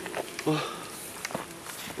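Dry leaf litter on the forest floor rustling and crackling in a few short scuffs and clicks as people shift and move on it.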